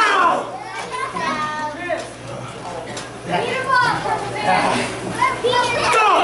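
Children in an audience shouting and cheering in high voices, with a low steady hum underneath.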